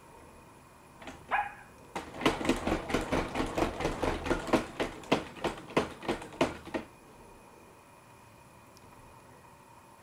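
BabyAlpha robot dog answering a 'spin around' command: a short electronic chirp, then a fast run of sharp clicking sounds, about four a second, lasting nearly five seconds as it turns in place.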